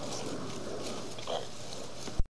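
Steady background hiss, with one short vocal sound from a person, like a brief grunt, about a second and a half in.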